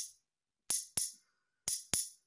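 Two metal spoons struck together, tapping out a rhythm pattern: one clink at the start, then two quick pairs of clinks, each with a short high metallic ring.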